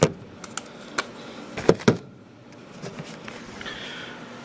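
Handling noise: a handful of sharp clicks and knocks as things are set down and picked up, the loudest two close together just before halfway.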